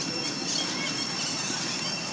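A young long-tailed macaque giving faint, short high-pitched squeaks, over a steady high-pitched whine in the background.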